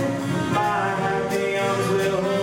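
Jazz big band playing live: saxophone, trombone and trumpet sections with piano, double bass and drums, holding sustained chords.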